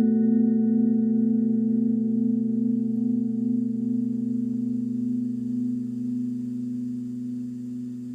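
Final chord on a semi-hollow electric guitar through a small amplifier, left to ring out with a slight wavering and slowly fading.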